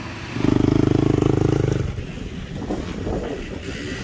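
Dirt bike engine running close by for about a second and a half, loud and pulsing, then falling away to softer background pit noise.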